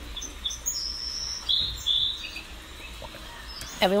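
Birds chirping faintly in the background: several short, high whistled notes in the first two and a half seconds, over a low steady hum.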